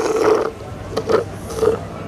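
Slurping through a bendy drinking straw: a gurgling suck, then two short slurps as the last of a drink is drawn up.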